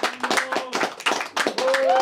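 Audience clapping, with a few voices calling out among the claps and one held cheer near the end.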